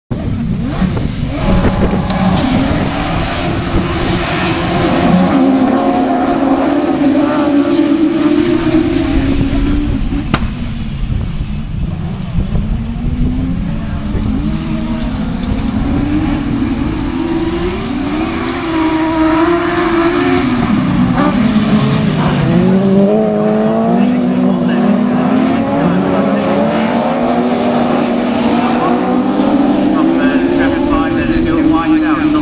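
Several autograss special buggies' engines revving hard together, their pitch climbing and dropping with each gear change as they race on a dirt track.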